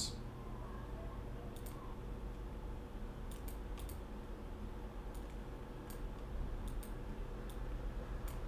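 Faint, sharp computer mouse clicks, about ten scattered irregularly, over a low steady room hum.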